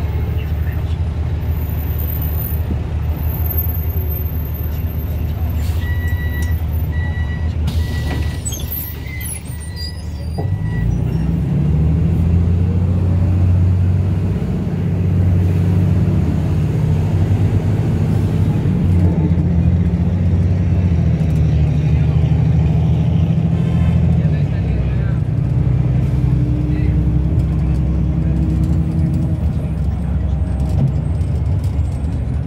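Metropolitano BRT bus at a station: a run of door warning beeps and a burst of air hiss as the doors close, then about ten seconds in the engine pulls away, rising in pitch through several gear changes as the bus gathers speed.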